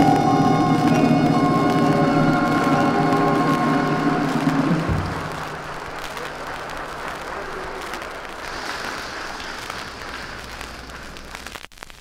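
Live concert audience applauding while a band's final held chord rings out; the chord stops about five seconds in, and the applause carries on more quietly, tailing off.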